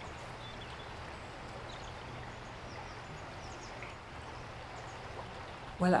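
River water flowing, a steady even noise, with a few faint bird chirps.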